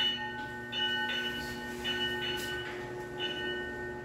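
Steady mechanical hum made of several held tones, with a few soft shuffling noises over it.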